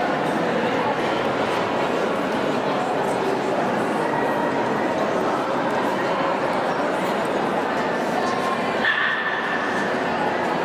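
Dogs barking and yipping over steady crowd chatter, with a short high note near the end.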